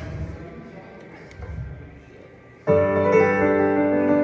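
Brief low room murmur, then about two-thirds of the way in a piano chord is struck on a stage keyboard, opening the song, and its notes ring on as the playing continues.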